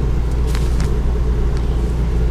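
A steady low machine hum with a few faint, even tones running under it.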